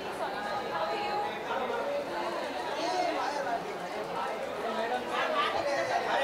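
Many voices talking over one another in a large room, with no single clear speaker: the chatter of a crowd. It gets somewhat louder in the last second.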